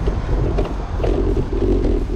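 Wind rumbling on the microphone of a camera mounted on a moving road bike, with a steady mid-pitched droning tone over it from about a quarter second in.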